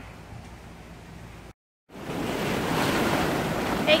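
Tropical-storm wind: a faint rush at first, then, after the sound cuts out briefly about one and a half seconds in, a much louder steady rush of a major storm rolling in.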